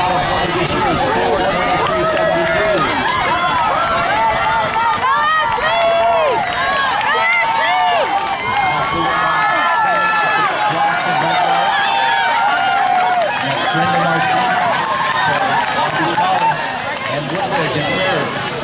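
Spectators at a track meet shouting and cheering runners on, many overlapping voices calling out at once, easing off slightly near the end.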